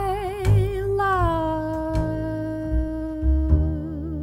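A female jazz vocalist holds one long note with vibrato, stepping down in pitch about a second in and swelling into wider vibrato near the end, over the low notes of a plucked upright double bass.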